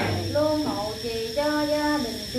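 A woman's voice chanting a Vietnamese Buddhist prayer in long held notes that step up and down in pitch.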